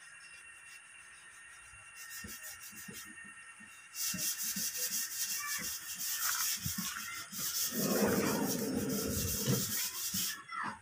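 Scraping and rubbing that gets much louder about four seconds in, with a heavier, lower scrape near the end as a drawer of the steel bed frame is slid open.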